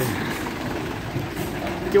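Fire engine's engine idling close by, a steady low rumble.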